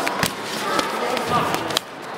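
A few sharp smacks of blows landing in a bout between gloved fighters: two close together just after the start and one shortly before the end. Men's voices carry in the hall under them.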